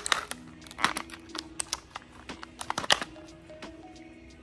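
Irregular sharp clicks and light rattles of small plastic parts and a cable being handled in and pulled out of a plastic packaging tray, over quiet background music with held notes.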